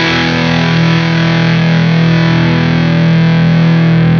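Vola Vasti KJM J2 semi-hollow electric guitar on its neck humbucker, played through an Orange Rockerverb 100 amp with distortion: a single overdriven chord left to ring, sustaining steadily.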